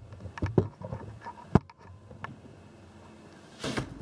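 A few light knocks and clicks, the sharpest about one and a half seconds in, then a short rustle near the end: a door and footsteps as someone walks into a room.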